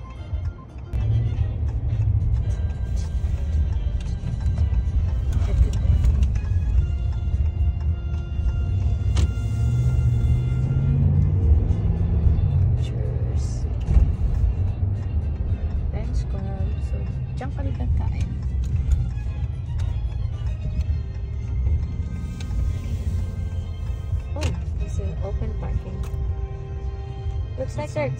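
Steady low road and engine rumble inside a Ram pickup truck's cabin while driving, with music from the car radio playing over it.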